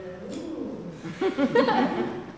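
A person's voice making a short, wobbling, wordless sound about a second in, rising and falling quickly in pitch like a coo or a hum.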